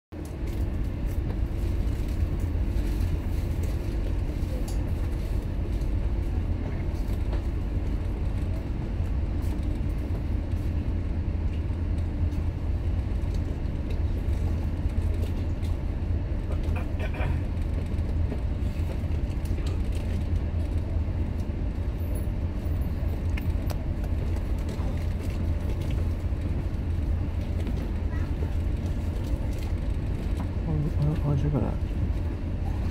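The engines of Sun Ferry's ferry 新輝叁 running with a steady low drone, heard from on board. Faint voices come through now and then.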